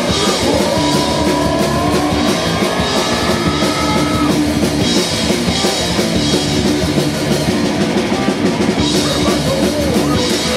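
Rock band playing, recorded at rehearsal: drum kit and guitars, with a long held high note that slides upward over the first four seconds.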